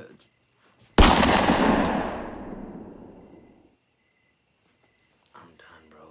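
A sudden loud bang about a second in, dying away over the next two and a half seconds.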